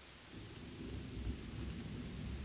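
A low rumble swells in about a third of a second in and continues over a steady hiss, like distant thunder over rain.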